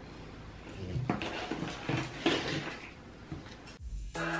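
Loose potting mix being scooped and pressed into a terracotta pot by hand: a few irregular rustling, scraping strokes of soil and bark.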